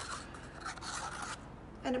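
Soft, scratchy scraping of a stir stick in a paper cup as mica powder is mixed into a dash of alcohol. It fades about a second and a half in.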